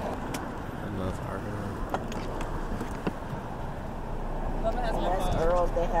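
Steady low rumble of a car rolling slowly, growing a little louder toward the end, with faint talking near the end.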